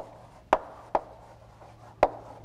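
Chalk writing on a blackboard: sharp taps as letters are stroked onto the slate, three within the first second and another at the end.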